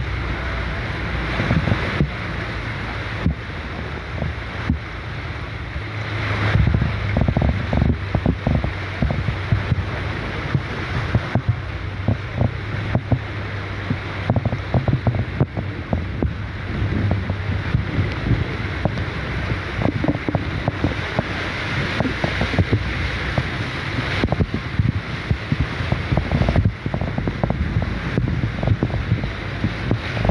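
Car driving through deep floodwater in heavy rain: water surging and splashing against the side of the car, with a steady low engine hum and many small splashes and knocks.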